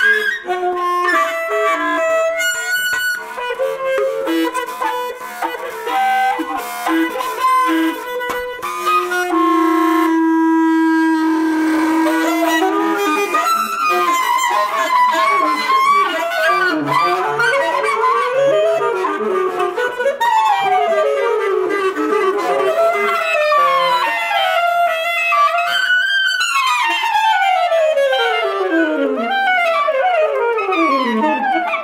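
Saxophone and clarinet playing a duet of fast, busy interlocking lines, with a long held note about ten seconds in and several quick falling runs in the last third.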